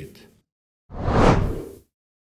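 A whoosh transition sound effect: a single noisy swell about a second long that builds and fades, starting about a second in.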